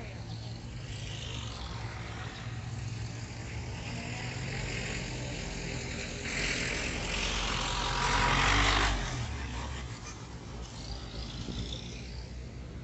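Street traffic at a city intersection: a car drives past close by, its engine and tyre noise swelling to a peak about eight seconds in and then falling away quickly, over a steady low traffic hum.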